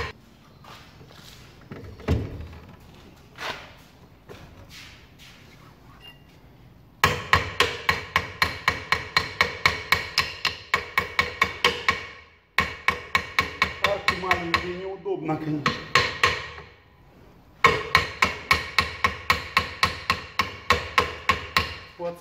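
Hammer blows on the steel brake drum of a ZAZ-965 to knock it loose from the hub. A few scattered knocks come first, then from about seven seconds in, quick runs of ringing metal strikes, several a second, broken by two short pauses.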